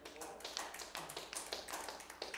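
Hands clapping: a quick, uneven run of sharp claps, several a second.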